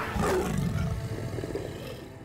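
A low big-cat growl from the cheetah-woman villain Cheetah, loudest in the first second and then fading, over a sustained music score.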